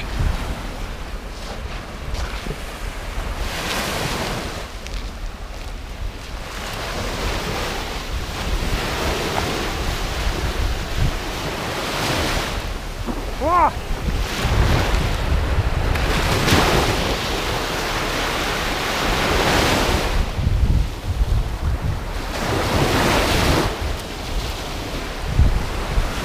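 Small Baltic Sea waves washing in against a slushy ice shelf at the water's edge, swelling every three to four seconds, with wind buffeting the microphone.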